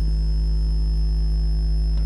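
Steady electrical hum in the broadcast sound: an even low drone with a thin, faint high whine above it.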